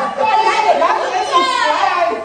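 A group of people laughing and calling out at once, their excited voices overlapping.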